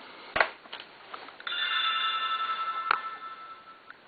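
A click, then about a second and a half in a steady electronic tone of several pitches held for about two and a half seconds: the motorcycle camera's controller screen powering on.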